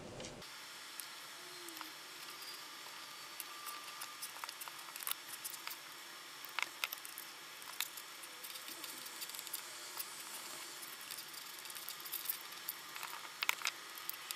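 Faint, scattered clicks and rustles of hands twisting stripped copper wire ends together, over a steady hiss.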